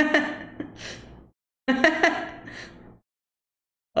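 A man laughing in two bursts of about a second each, each starting loud and trailing off, with a third beginning at the very end.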